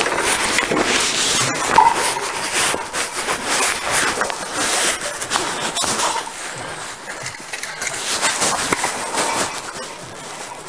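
Scuffling and rustling of a struggle picked up by an Axon Body 2 body-worn camera whose microphone is pressed and rubbing against clothing: a loud, jumbled crackle of fabric noise and frequent small knocks, easing somewhat in the second half.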